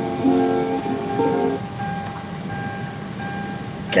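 Music playing through a car's stereo: a short melodic phrase of held notes changing pitch in the first second and a half, then steadier sustained tones.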